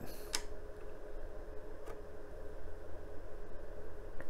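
Small screwdriver driving the tiny retaining screw of an M.2 SSD into the motherboard mount: a couple of faint clicks, one just after the start and another near the two-second mark, over a low steady hum.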